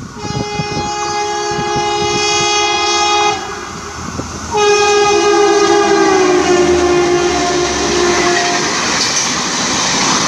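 An express train's locomotive horn sounds two long blasts as the train approaches and runs through at speed. The second blast drops in pitch as the locomotive passes. The rush and clatter of the coaches going by then carries on after the horn.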